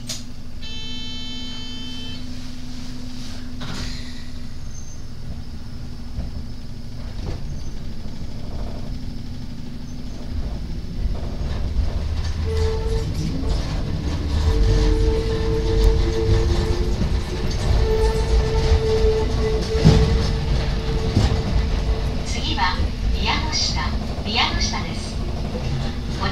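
Hakone Tozan Railway electric train pulling away: a short electronic tone sounds about a second in, then the train runs with a steady low hum. From about halfway the traction motor's whine comes in and rises in pitch as the train gathers speed, over a growing rumble of wheels on rails. Near the end there are quick clicks and rattles.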